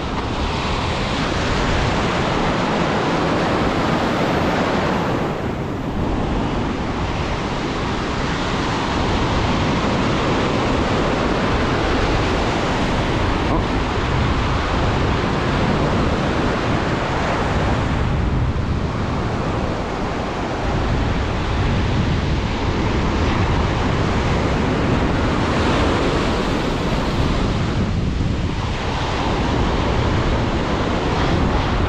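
Ocean surf washing and breaking in the shallows, a steady loud rush with wind buffeting the microphone. The wash eases briefly about three times, roughly every ten to twelve seconds, as the sets come through.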